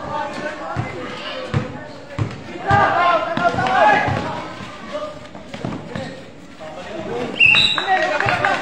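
A basketball being dribbled on a hard court, a steady run of bounces a little under two a second, with players and spectators shouting over it.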